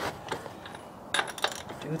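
A few sharp metallic clicks and clinks of a long-handled socket wrench being fitted and turned on a wheel's lug nuts as they are snugged up, with a quick cluster of clicks a little past a second in.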